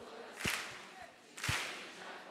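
Hand claps keeping a slow beat, about one a second, each sharp crack followed by a reverberant tail in a large hall.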